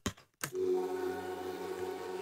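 A sustained synth pad from the Arturia Analog Lab software instrument, playing back in a beat. It starts after a short click about half a second in and holds as a steady chord.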